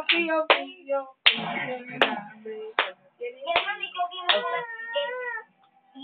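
Voices singing a song, with a long wavering held note near the end, punctuated by a few sharp hand claps.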